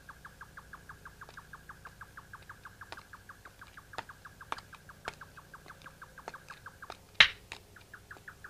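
Rapid, even chirping of a small animal, about seven short pulses a second, with a few scattered sharp clicks; the loudest click comes about seven seconds in.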